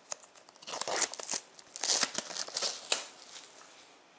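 Plastic shrink wrap being torn and pulled off a Blu-ray case: a run of irregular crackles starting about a second in and dying away near the end.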